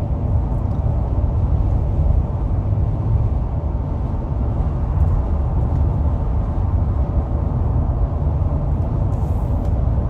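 Steady road noise of a car cruising at highway speed, heard from inside the car: a constant low rumble of tyres and engine with no change in pace.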